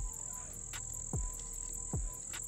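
Chorus of crickets, a steady high-pitched trill, with a low falling thump repeating about every second.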